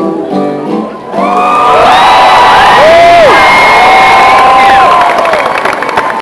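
An acoustic guitar's last strummed chord rings out and fades at the end of a song, then about a second in a crowd breaks into loud cheering and applause, with long whoops gliding up and down over it.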